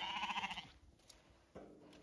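A Zwartbles lamb bleating: a short quavering call that trails off about half a second in. A faint knock follows about a second later.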